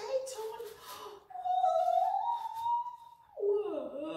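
A woman's voice drawing out one long, high "oooh", rising slightly and then sliding down in pitch near the end, after a few brief murmured sounds.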